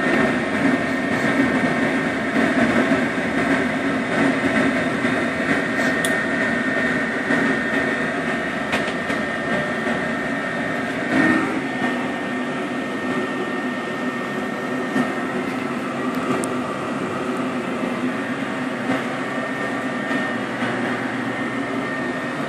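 Used gas furnace converted to propane running on a test fire with its burners lit, giving a steady whir and rush with a thin, steady high whine.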